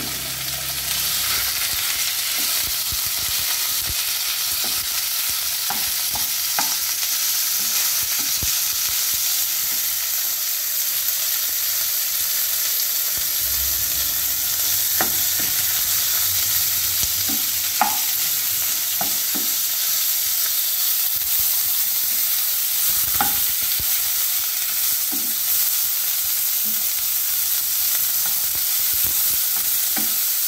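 Minced pork frying with chopped garlic in oil in a nonstick wok, with a steady sizzle. A wooden spatula stirs and breaks up the meat, with an occasional knock or scrape against the pan.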